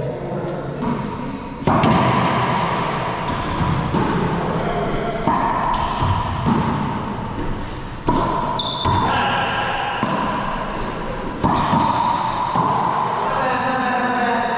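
Racquetball rally in an enclosed court: sharp hits of the ball off racquets and walls, ringing with a long echo, several of them a few seconds apart. Short high squeaks, typical of sneakers on the hardwood floor, come between the hits.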